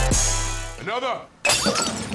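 Outro music with a drum beat fades out in the first second, followed by a brief vocal sound with a bending pitch. About a second and a half in, a glass-shattering sound effect breaks in suddenly and rings down.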